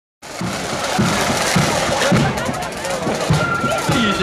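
A marching band's drums beating time: a bass drum thuds about twice a second under the rattle of snare drums. Near the end a single high held note comes in. Spectators talk over it.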